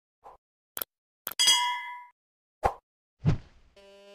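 A string of short added sound effects: a soft blip, two sharp clicks, then a bright bell-like ding that rings for about half a second. Another click and a dull thump follow, and a short buzzing tone starts near the end.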